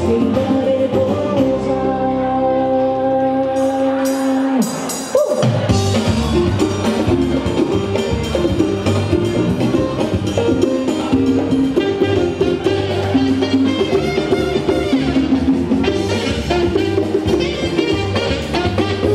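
Live band music with alto saxophone, congas and a female singer in a Latin-jazz style. A long held chord breaks off about five seconds in, and a new, more rhythmic piece starts at once.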